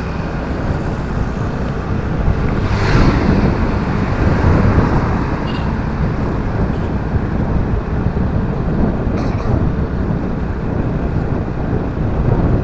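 Wind rushing over the microphone of a moving motorcycle, with the bike's engine and road noise running low underneath; a brief louder swell about three seconds in.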